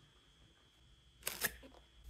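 Cardboard packaging handled with gloved hands: a quiet start, then a short burst of sharp clicks and crackles a little over a second in as the box is gripped and its flap worked open.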